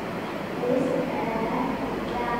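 Soft, indistinct talking from about half a second in, over a steady background hum.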